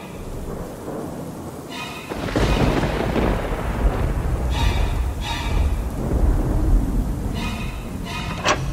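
Thunder rumbling over rain, a storm sound effect that swells up about two seconds in and keeps going, with a few short ringing musical notes over it.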